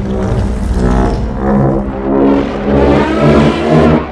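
Giant-monster (kaiju) roar sound effect: a long, deep, rasping roar that swells in several surges.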